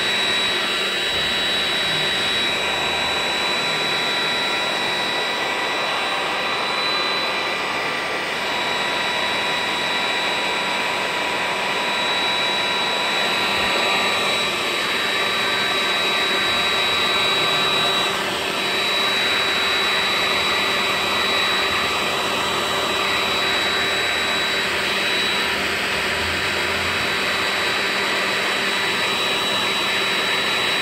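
A Clairol DryGuy 1000-watt handheld hair dryer running steadily on its hot setting, a loud rush of air with a steady high-pitched whine. It is being used as a heat gun to shrink a new plastic wrap onto a lithium-ion vape battery.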